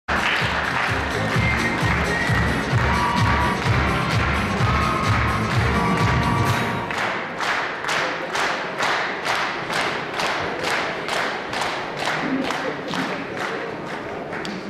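Stage music with a strong low beat plays over an audience clapping in time, about three claps a second. The music stops about seven seconds in, and the rhythmic clapping carries on alone.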